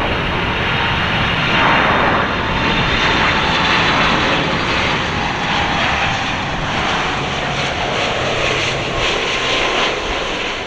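Boeing 747-400 on low final approach, its four turbofan engines at approach power making a loud, steady jet noise with a faint whine over it.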